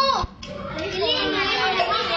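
Children's voices talking and calling out over one another, with a brief lull a moment after the start.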